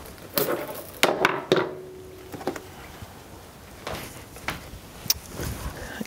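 Handling noise as a sheepskin fleece is moved about close to the microphone: soft rustling with several sharp knocks, the loudest about a second in.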